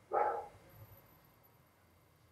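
A single short bark-like call just after the start, fading within about half a second.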